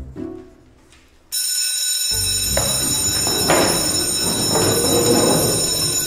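Electric school bell ringing loudly and steadily, starting about a second in and signalling the end of the lesson. From about two seconds in, a loud bustle of movement runs underneath it.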